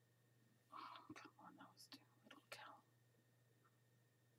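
A woman whispering or muttering under her breath for about two seconds, a little after the start, otherwise near silence.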